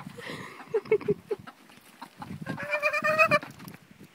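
Chickens clucking with a few short notes, then, about two and a half seconds in, one loud wavering animal call lasting under a second.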